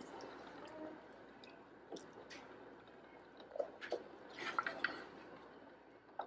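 Broth dripping and sloshing faintly as a ladle is moved through a large pot of meat stew, with a few light knocks and clicks, most of them about four to five seconds in.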